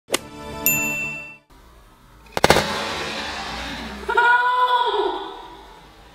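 Short intro jingle of chime-like sound effects: a ringing ding about half a second in, a sharp struck hit with ringing about two and a half seconds in, then a wavering tone that fades out.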